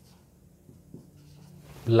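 Faint sounds of a marker writing a word on a whiteboard over a low room hum, with a small tick about a second in; a man's voice starts just before the end.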